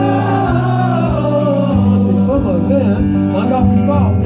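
Live song: a man singing into a microphone while playing an acoustic guitar. The music comes in suddenly at the start.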